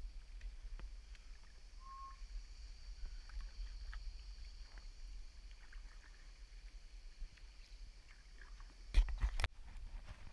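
Kayak on calm sea: soft water lapping and dripping with small ticks, over a steady low wind rumble on the microphone. A loud bump comes near the end.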